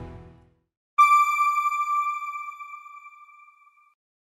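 Background music fades out, then about a second in a single electronic ping on one pitch sounds suddenly and rings, fading away over about three seconds: the channel's outro logo chime.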